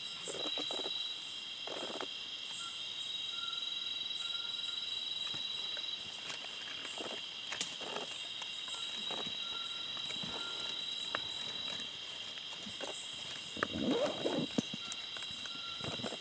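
Night-time tropical forest insect chorus: a steady high drone of crickets with rapid chirping pulses above it and a fainter broken note coming and going. A few short low noises stand out near the end.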